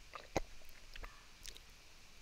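A few faint, sharp clicks over quiet room tone, the strongest about a third of a second in and another about a second and a half in.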